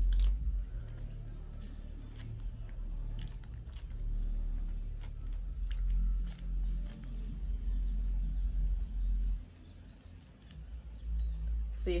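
Low rumbling movement noise with faint scattered clicks and soft rustles as a thin oil-absorbing blotting sheet is dabbed over the face. The rumble drops away briefly near the end.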